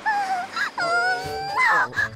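A cartoon character's high-pitched, drawn-out vocal calls: a short held note, then a longer flat one, then a rising glide near the end, over background music.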